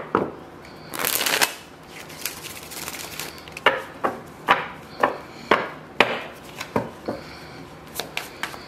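A tarot deck shuffled by hand. There is a brief rush of sliding cards about a second in, then a string of sharp taps every half second or so as packets of cards are dropped and squared against the deck.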